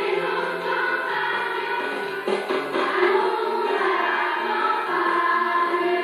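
A children's choir singing a song in sustained, flowing notes.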